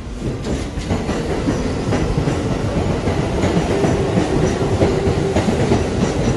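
New York City subway train running, its wheels clattering on the rails, with a steady whine for a second or so about four seconds in.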